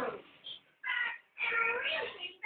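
Eight-week-old Staffordshire bull terrier puppy giving two short, high-pitched whines, the first about a second in and the second running to the end.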